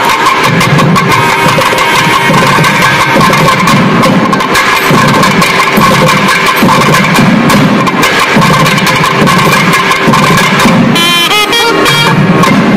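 Nadaswaram ensemble, several double-reed shawms, playing a melody in unison over a steady sruti drone, with thavil drums beating a steady rhythm underneath. The reed line bends and ornaments near the end.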